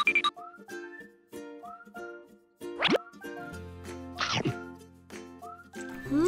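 Light background music for children, with two quick cartoon sound effects: a fast rising whistle-like glide a little before halfway and a fast falling one about a second and a half later.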